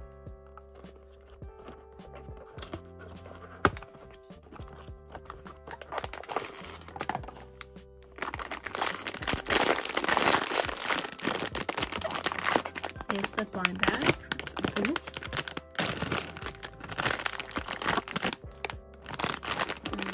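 Hands crinkling and squeezing a plastic blind-box bag, a dense crackling that starts about eight seconds in and goes on to the end, over background music. Before that, quieter handling of the cardboard box with one sharp click a little under four seconds in.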